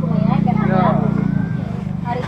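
A small engine running steadily with a low, evenly pulsing drone, under the chatter of several people talking.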